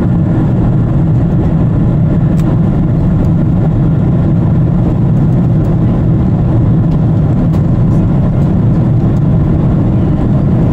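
Steady low roar inside the cabin of a Boeing 777 airliner in flight after takeoff: its twin jet engines and the rush of air past the fuselage.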